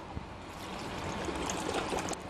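Water pouring from a plastic bottle into a steel pressure cooker pan of chopped tomatoes: a steady trickling hiss that grows slowly louder.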